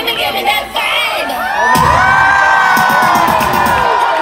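Concert crowd cheering and screaming over a pop song's beat, many high voices overlapping; the cheering grows louder a little under two seconds in and stays loud.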